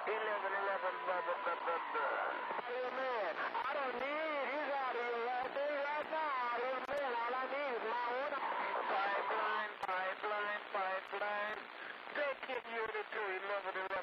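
Another station coming in over a CB radio's speaker: thin, band-limited voice audio full of warbling, sliding pitch, with a steady tone in the first couple of seconds.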